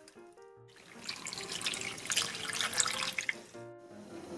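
Running water with fine splashing, like a tap flowing into a sink, for about two and a half seconds. It sits between two short phrases of a light music jingle.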